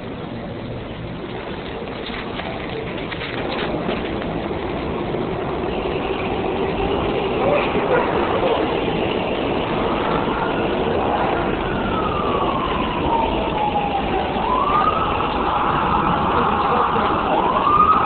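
Emergency vehicle siren wailing, its pitch slowly rising and falling in long sweeps, coming in about halfway through over a steady din of background noise that grows louder.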